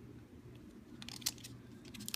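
Clear plastic coin holder being handled in the fingers, crinkling and clicking in two short bursts, one about a second in and one near the end, over a low steady hum.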